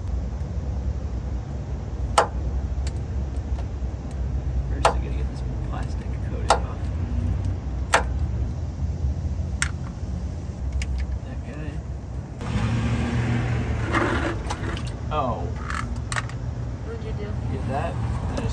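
Several sharp metallic clicks of hand tools on the heater hose and its fittings under a school bus, over a steady low rumble. About twelve seconds in, the noise of a passing car rises.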